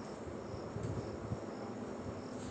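Quiet room tone: a faint steady background hiss, with the light strokes of a marker writing on a whiteboard.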